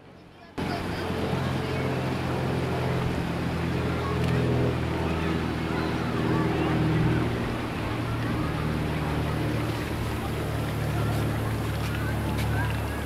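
A motor running steadily with a low hum under outdoor background noise. It comes in suddenly just after the start.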